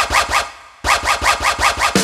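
A DJ-style record-scratch effect opening a children's song: quick back-and-forth scratches, about six a second, in two runs with a short break about half a second in.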